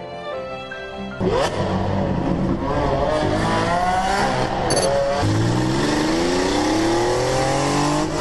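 A sports car's engine accelerating hard through the gears, its pitch climbing, dropping at each shift and climbing again, ending in one long rising pull. It cuts in suddenly about a second in, after a short stretch of soft music.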